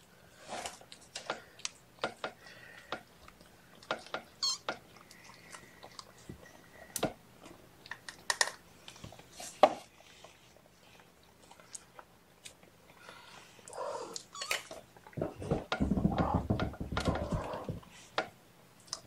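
Young kittens and their mother cat moving about a blanketed pen: scattered small clicks and rustles, with faint cat sounds here and there. A louder stretch of muffled rustling comes in the last few seconds.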